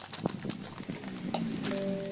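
Scissors snipping open a plastic sweets bag, with sharp clicks and the wrapper crinkling. Music with held notes comes in about halfway through.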